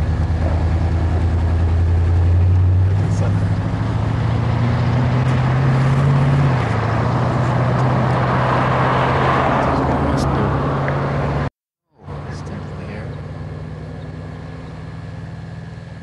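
A motor vehicle's engine running with a steady low hum whose pitch steps up and down a couple of times. The sound cuts out completely for about half a second near the end, then comes back a little quieter.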